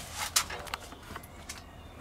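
A few light scuffs and soft clicks of footsteps on concrete paving slabs, over a steady low background rumble.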